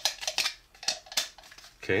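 Hard plastic toy pieces clicking and knocking as they are handled and fitted onto a Potato Head body: a handful of sharp, separate clicks over about a second and a half.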